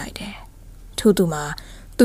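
Speech only: a woman narrating a story in Burmese, with a short pause near the start before the next phrase.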